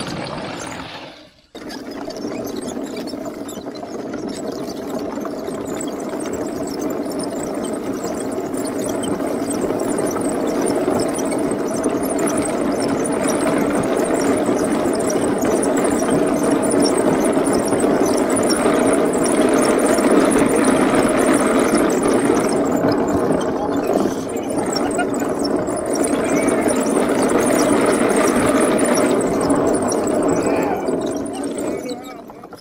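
Homebuilt wooden tank driving, its two NPC Black Max electric drive motors and wooden tracks running with a steady mechanical hum and rattle that grows louder. There is a brief drop about a second and a half in.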